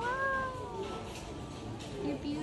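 A single high, wordless call that rises briefly and then falls in pitch, lasting about a second.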